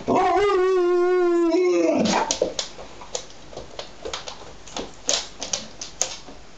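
An Alaskan malamute 'talking': one long call of about two seconds, held at a steady pitch with a slight waver and dropping at the end, the dog asking to go out. A run of short, sharp sounds follows.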